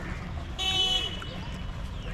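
A short vehicle horn toot, high-pitched and lasting about half a second, comes in about half a second in over a steady low rumble.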